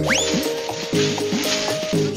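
Cartoon background music with a steady hiss laid over it, which opens with a quick rising whistle.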